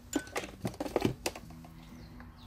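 A handful of light clicks and knocks as a jewellery hammer is set down and handled on the workbench, bunched in the first second or so.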